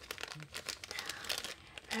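Clear plastic bag crinkling in irregular rustles as hands handle it and slide small tokens out of it.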